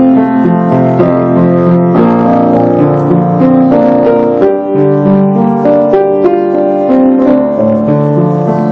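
Solo piano playing a slow song: a melody over sustained chords, with the bass notes changing about once a second.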